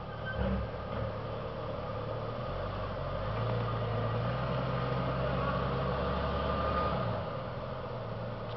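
Engine of a 4x4 SUV crawling over boulders, working harder from about two and a half seconds in and easing off about a second before the end.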